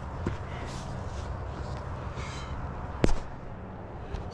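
Faint rustling as a plastic helmet is handled, with one sharp click about three seconds in.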